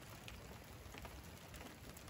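Faint, light patter of water drops on wet car paintwork, a soft rain-like hiss with small scattered ticks.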